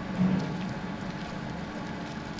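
Steady low machinery hum at a tunnel construction site, with a brief louder low swell about a quarter second in.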